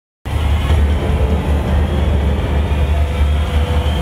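Music with a deep, steady rumbling drone, starting abruptly and loud, played over a hall's sound system.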